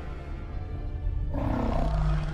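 Film score with a loud, deep roar from a huge whale-like sea creature cutting in suddenly a little past halfway through.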